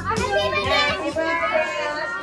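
Children's voices, high-pitched, speaking and calling out.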